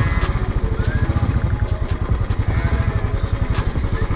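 Motorcycle engine running steadily while riding, a low rumble with fast even pulsing, with background music mixed over it.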